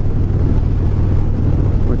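A 2007 Harley-Davidson Dyna's V-twin engine running steadily at highway cruising speed, with wind rushing over the microphone.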